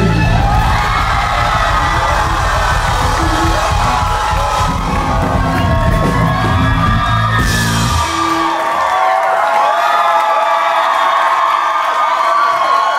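Live rock band playing loud with heavy bass and drums, a crowd yelling and singing along over it. About eight seconds in the bass and drums stop, right after a cymbal crash, as the song ends, leaving the crowd cheering and screaming.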